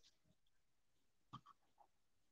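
Near silence after the talk ends, broken only by one faint, short sound about a second and a half in.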